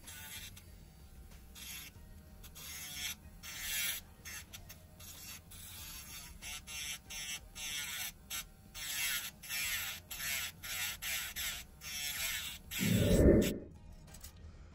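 Small pen-style electric nail drill (e-file) running with a low hum, its bit grinding against acrylic nails in many short, stop-start passes. A loud low thump comes near the end.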